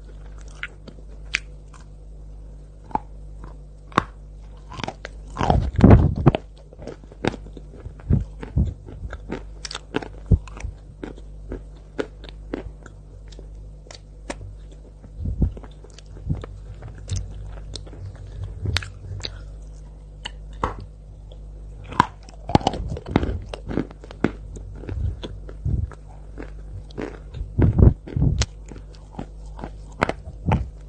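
Close-miked biting and chewing of chunks of white chalk coated in cocoa sauce: a steady run of sharp, dry crunches and snaps. The bites are loudest about six seconds in and twice more in the last third, over a steady low hum.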